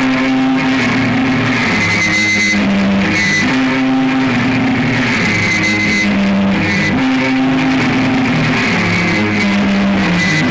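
Live rock band playing an instrumental stretch: loud electric guitars hold low chords that change every second or two, over drums and cymbals.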